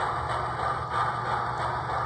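HO scale model steam locomotive pulling passenger cars on track: a steady mechanical whir and rattle from its motor and gearing and the wheels on the rails.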